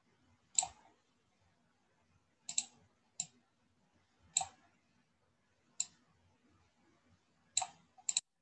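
Computer mouse button clicking, about six sharp clicks at irregular intervals, a couple of them in quick double pairs.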